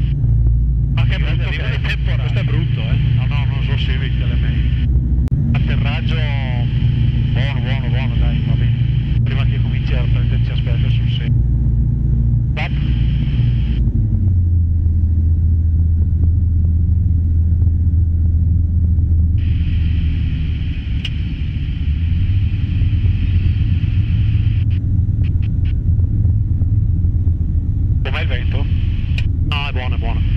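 Alisport Yuma ultralight's engine and propeller running steadily, heard inside the cockpit. Its note drops about halfway through as power is pulled back for the descent, then rises slightly again.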